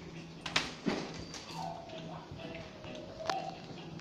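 Sharp metallic clinks and rattles of a wire kennel gate and a chain lead as a dog is brought out of its cage, with a drawn-out thin squeal through the middle.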